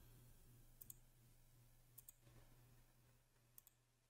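Faint computer mouse clicks: a quick press-and-release pair about a second in, another pair about two seconds in, and a single click near the end, over near silence.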